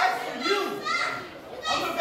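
Voices shouting and calling out in a hall, several of them high-pitched, with a brief lull about three-quarters of the way through.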